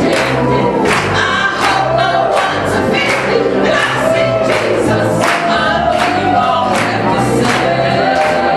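Gospel music: several voices singing together over instrumental backing, with a steady beat.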